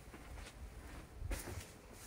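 1987 Hunter Comfort Breeze ceiling fan running, heard faintly as a low hum, with one brief soft noise about a second and a half in.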